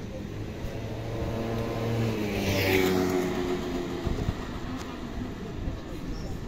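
A motor vehicle's engine passing close by, growing loudest about two and a half seconds in and then fading, over street background noise.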